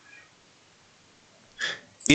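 Quiet room tone on a headset microphone, then a short, sharp intake of breath by a man about one and a half seconds in.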